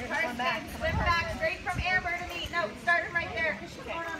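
People talking throughout, with no other sound standing out above the voices.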